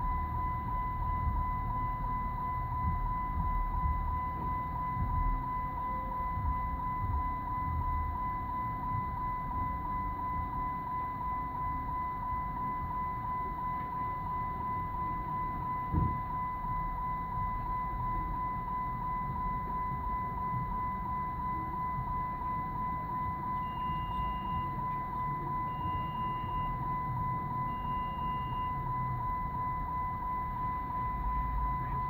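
A steady high-pitched electronic tone over a low rumble, with a single knock about halfway through and three short, higher beeps about two seconds apart near the end.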